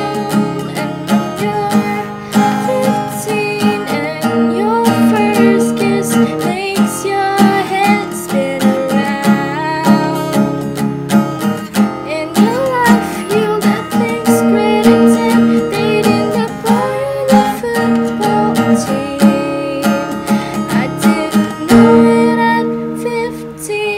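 Acoustic guitar strummed in a steady, rhythmic chord pattern.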